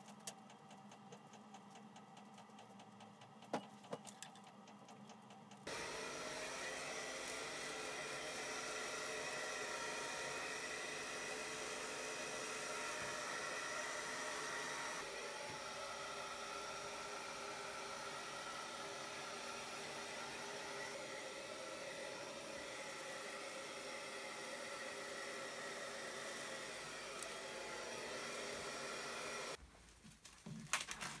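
A few sharp clicks from plastic film being pressed onto tape, then a hair dryer switches on about six seconds in and runs steadily, blowing hot air over the plastic window film to shrink it taut. Its sound drops a little about halfway and cuts off just before the end.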